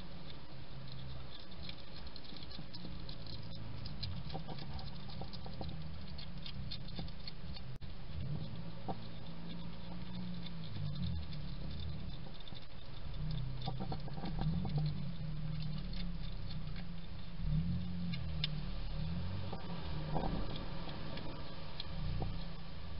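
A European hedgehog eating from a food dish: rapid, irregular wet chewing and crunching, heard as a stream of small clicks.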